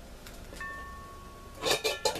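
A brief ringing metallic tone, then a quick clatter of metal-on-metal clinks near the end as the metal burner parts at the base of a trash-can smoker are handled.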